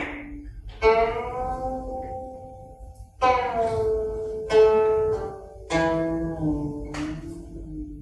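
A guqin played solo: about five plucked notes spaced a second or more apart, each ringing on while its pitch slides up or down as the left hand glides along the string.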